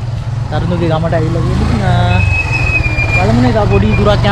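Men talking over a motorcycle engine idling with a steady low rumble.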